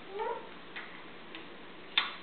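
A baby's short rising squeal, then a few light clicks and a sharper clack near the end from the wooden activity cube's parts being knocked.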